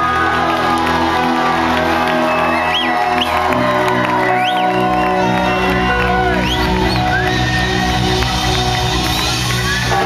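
Live reggae-dub band playing loudly: bass guitar, drums and keyboards, with the bass line shifting to a new held note about three and a half seconds in. The crowd whoops and cheers over the music.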